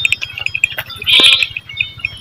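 A single bleat from livestock about a second in, the loudest sound, over a steady, rapid high-pitched chirping in the background.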